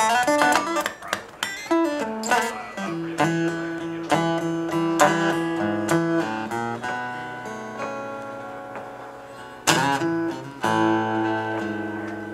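Solo acoustic guitar playing a blues intro: single picked notes and ringing chords, with a sharp chord hit just under ten seconds in and another about a second later.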